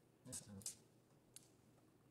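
Near silence, room tone, with a faint brief snatch of voice just after the start and one small sharp click about a second and a half in.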